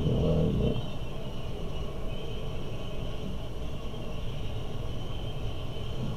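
Steady low rumble of room background noise with a faint, steady high-pitched whine, and a brief low hum of a voice at the very start.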